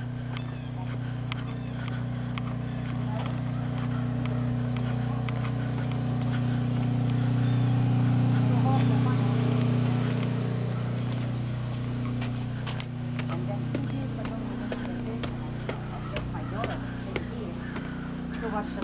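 Footsteps, with a steady low hum from a running motor or engine that swells to its loudest about halfway through and then eases.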